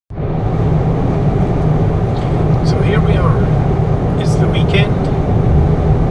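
Steady road and engine rumble inside a car's cabin at highway speed.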